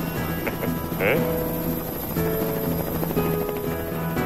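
Cartoon helicopter rotor sound effect running steadily under background music, with a brief vocal sound about a second in.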